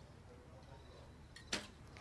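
A quiet pause with only a faint low background hum, broken by one brief sharp sound about one and a half seconds in.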